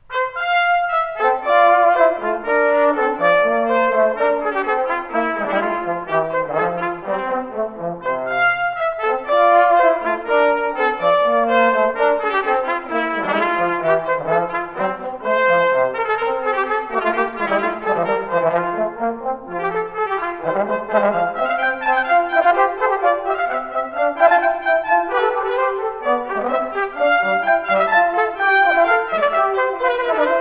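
Trumpet and trombone duet playing a Baroque canonic sonata as a strict canon: the trumpet starts alone and the trombone comes in about a second later with the same notes, the two lines overlapping.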